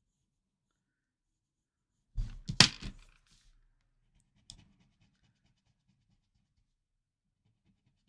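A short clatter of a few knocks about two seconds in, as a pencil in a metal extender is set down and a paper blending stump picked up, then a single small click. After that only faint rubbing of the stump on the paper tile.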